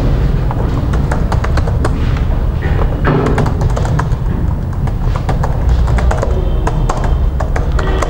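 Computer keyboard typing: irregular quick key clicks over a steady low hum.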